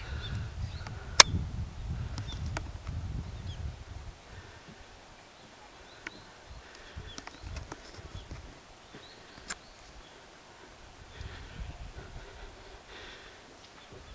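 Outdoor ambience with low rumbling wind noise on the microphone, heaviest in the first few seconds and again near the end, and faint high bird chirps. A single sharp click comes about a second in, with a few fainter clicks later.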